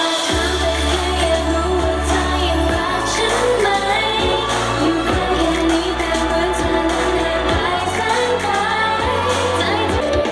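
Pop song with a singing voice over a heavy bass line that comes in just after the start.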